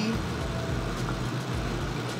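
Steady background hum with a faint click about halfway through, as an empty mascara tube is handled and its brush applicator is pulled out.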